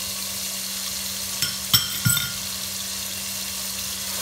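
Sliced onions frying in oil in a pot, sizzling steadily. Ginger-garlic paste goes in from a glass dish, with a few sharp knocks and one brief ringing clink about halfway through.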